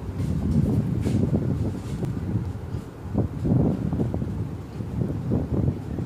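Low, uneven rumble of wind or handling noise on the recording phone's microphone as the camera is moved in close.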